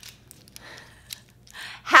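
A quiet pause with a few faint light clicks from a handful of plastic pens being handled, then a soft breathy intake of breath near the end.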